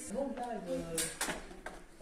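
Indistinct voices in a large hall, with a few sharp metallic clicks clustered about a second in.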